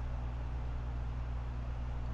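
Steady low hum with a faint even hiss: background noise of the commentary recording, heard in a pause between words.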